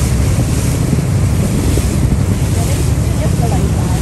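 Wind buffeting the microphone on a moving boat, over the steady running of the boat's motor and water rushing past the hull.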